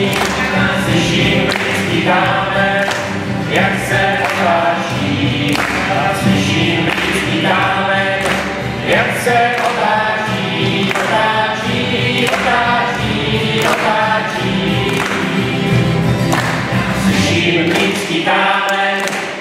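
A mixed choir of men, women and children singing a song together, accompanied by strummed acoustic guitar and a double bass.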